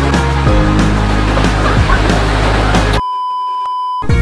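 Background music that cuts off abruptly about three seconds in, giving way to a steady, high test-tone beep of the kind played with TV color bars, lasting about a second.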